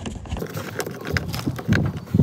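Screwdriver turning out a self-tapping screw from the plastic trim in a car's rear door armrest: a run of light, irregular clicks and scrapes of tool on screw and plastic.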